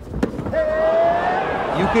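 A kick striking a fighter's groin cup with a sharp, explosive crack, followed by one long, slightly rising vocal 'ooh'.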